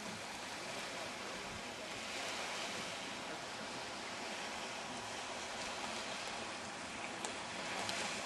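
Small sea waves washing onto a sandy shore, a steady rushing noise.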